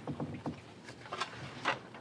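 A lull in a meeting room: low room noise with a few faint, short clicks and rustles.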